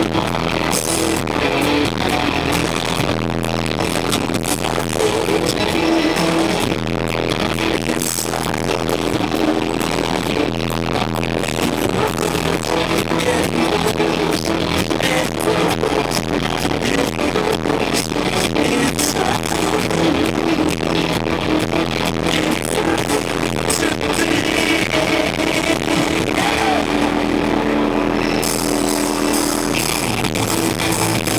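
Live rock band with electric guitar and drums playing an instrumental stretch, very loud through the PA. It is recorded right in front of the speakers, so the sound is overloaded and harsh.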